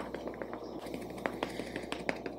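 Faint, irregular soft taps and clicks of a damp makeup sponge and fingers patting concealer onto the face, several in the two seconds, over a low steady room hum.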